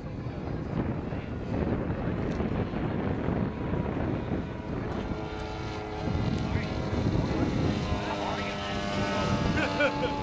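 Engine and propeller of a radio-controlled scale Cessna 152 model in flight. The plane is hard to hear over a noisy background at first; from about halfway through, its steady engine tone comes through clearer and louder.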